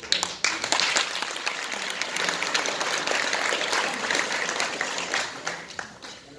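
Audience applauding in a hall, starting suddenly and dying away near the end.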